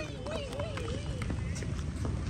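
Footsteps of several people running away across a paved road, with a voice giving one long, wavering call over them.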